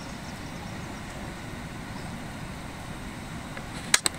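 Steady low rumble of outdoor background noise, with a few sharp clicks near the end.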